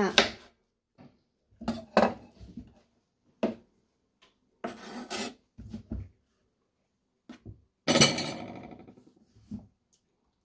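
Kitchen knife slicing through a peeled hairy gourd on a cutting board: a string of separate cuts and knocks of the blade and gourd on the board, with quiet gaps between them. The loudest comes about eight seconds in and trails off over about a second.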